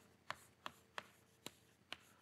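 Chalk writing on a blackboard: about five short, faint taps and clicks as the chalk strikes and lifts off the board.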